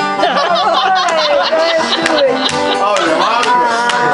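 Banjo being picked in a bluegrass-country style, with a voice over it whose pitch bends and holds, as in a sung line.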